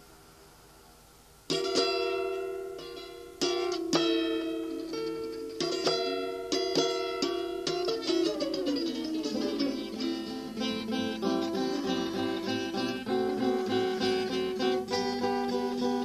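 Strummed acoustic guitar playing the instrumental intro of a song. It comes in suddenly about a second and a half in, after a short hush, and carries on with chords strummed in a steady rhythm.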